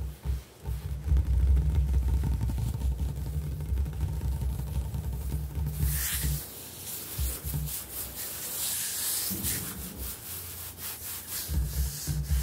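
Hands rubbing and scratching across a hard speckled kitchen countertop. For the first half it is a dense, low rubbing; about halfway through it changes to a crisper, higher scratching, and the low rubbing comes back near the end.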